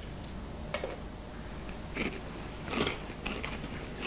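A person eating from a spoon: a few quiet, short mouth and lip sounds, about a second in and again around two to three seconds in.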